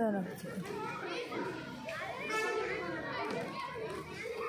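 Children talking and calling out while they play, several voices overlapping, with one child's high-pitched call about two and a half seconds in.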